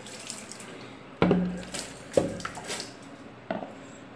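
Water splashed onto a window pane to rinse off a homemade cleaner, in a few sudden splashes, with water running and dripping.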